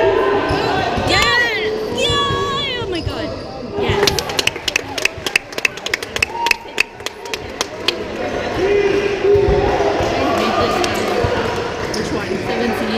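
Sounds of a basketball game in a gym: voices of players and spectators, with high bending squeaks about a second in. From about four seconds in, a run of sharp smacks lasts roughly three and a half seconds.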